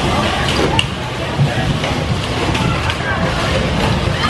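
Indistinct voices and shouting from riders and onlookers over the steady low rumble of a moving bumper car.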